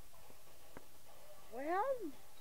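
A domestic cat meowing once near the end, a single call that rises and then falls in pitch.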